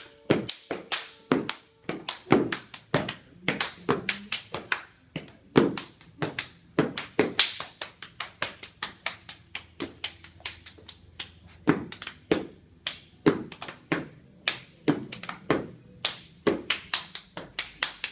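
Stepping: a steady stream of sharp foot stomps on a wooden floor mixed with hand claps and body slaps, several hits a second in an uneven, driving rhythm.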